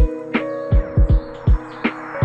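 Background music: held notes over a beat of deep drum thumps, with a sharp snare-like hit about two-fifths of the way in and another near the end.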